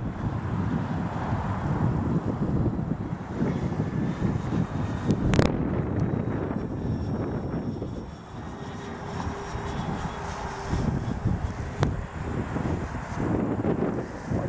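Twin electric motors and propellers of a FlightLineRC F7F-3 Tigercat radio-controlled model plane in flight. A faint steady whine comes in briefly a little past the middle, and there is a sharp click about five seconds in.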